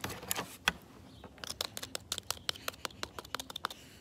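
Plastic utensils stabbing and scraping into dirt and gravel: a few sharp clicks, then a quick irregular run of clicks and scratches through the middle of the stretch.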